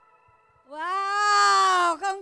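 A faint fading held chord, then about two-thirds of a second in, a single long, loud pitched call that rises, holds and falls away at the end.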